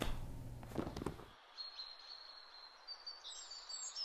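Faint room hiss that cuts off abruptly about a second and a half in, then faint, high songbird chirps and trills.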